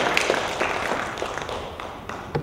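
Audience applause dying away, the clapping thinning and fading steadily.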